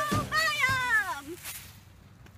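A high voice draws out one sliding note that rises and then falls, ending about a second and a quarter in, as the soundtrack song's phrase closes and the backing fades away.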